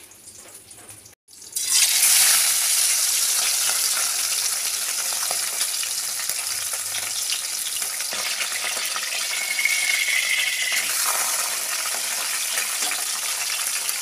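Pomfret frying in hot oil in a kadai: a loud, steady sizzle that starts abruptly about a second and a half in.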